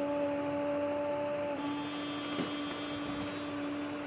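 A child's voice chanting one long 'Om', held on a steady pitch. Its tone changes about one and a half seconds in.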